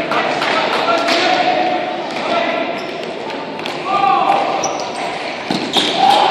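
Spectators' voices and calls in a large rink hall, with sharp knocks of a ball hockey stick on the plastic ball as a player stickhandles in alone on the goalie, and a louder crack of the shot near the end.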